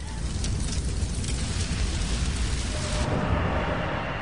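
Fire sound effect: a steady low rumble under a dense hiss with scattered crackles, the higher hiss thinning about three seconds in.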